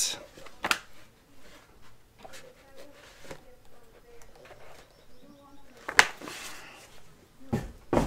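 A large hardcover book being handled and its pages moved, mostly quiet, with a small sharp snap about a second in and a louder sharp clap about six seconds in as the heavy book is shut.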